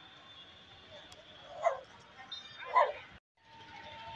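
Two short, loud calls about a second apart over a faint steady high whine; the sound drops out completely for a moment near the end.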